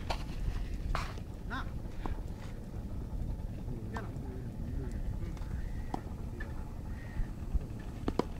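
Distant voices calling, over a steady low rumble, with a few sharp knocks scattered through.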